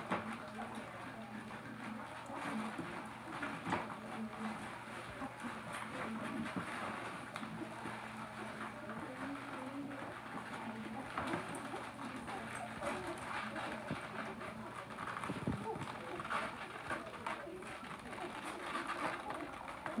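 Siberian husky puppies and their mother making soft, low whimpering and cooing sounds while the puppies nurse, with small scuffs and clicks of movement in the bedding.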